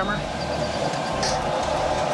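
Home-built tire power hammer running, its motor and spinning tire giving a steady mechanical hum.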